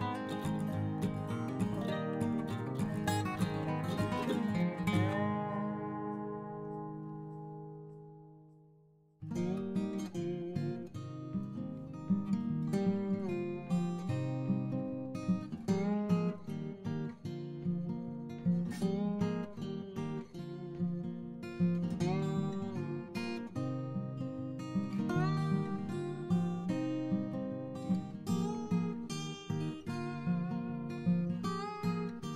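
Background music played on acoustic guitar: one piece fades out over several seconds, and a new plucked guitar piece starts about nine seconds in and runs on.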